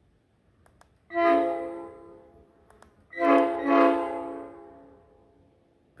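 Genuine Nathan AirChime P5 five-chime air horn sounding two blasts on half stage at about 90 PSI: a rich, smooth chord of several bells at once. The first blast is short and comes about a second in. The second comes about three seconds in and is longer. Each trails off slowly.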